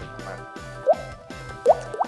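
A person imitating a water drop with the mouth, a finger flicked against the cheek: two quick, rising 'plop' sounds a little under a second apart.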